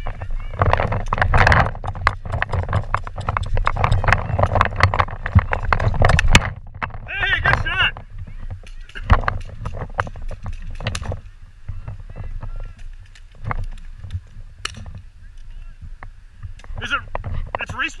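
Footsteps on dirt and grass with wind rumbling on the microphone, then distant voices a few seconds later and scattered sharp pops, typical of paintball markers firing.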